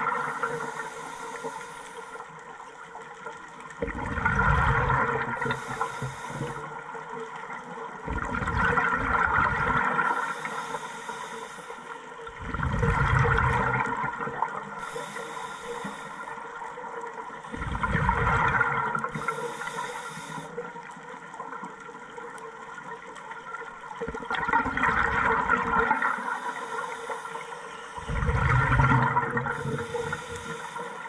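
Scuba diver breathing through a regulator, heard underwater: a rushing burst of exhaled bubbles about every four to five seconds, each followed by a short high hiss of the next inhale, over a faint steady hum.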